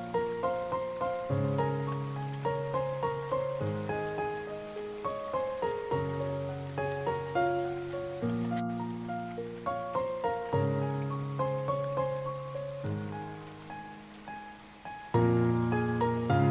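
Solo piano playing slow, sustained chords with a melody on top, mixed with the steady patter of rain. The piano grows softer toward the end, then comes back louder with a new chord about a second before the end.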